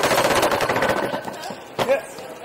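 Luggage rolling over the metal rollers of an airport security conveyor: a loud, rapid rattle, strongest in the first second and fading, then a single clack near the end.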